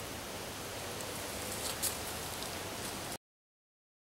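Steady, even hiss of outdoor background noise, with a faint click about two seconds in; it cuts off suddenly a little after three seconds.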